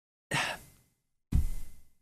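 A man breathing out and in while gathering his thoughts: a short sigh about a third of a second in, then a louder breath about a second later, with dead silence around them.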